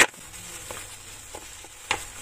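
Kitchen knife cutting through a slab of dark chocolate compound on a plate: a sharp snap at the start and another near the end as the blade breaks through, with small crackles and ticks between.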